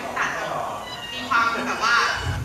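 A woman's high-pitched voice over a microphone and PA, with music playing behind it.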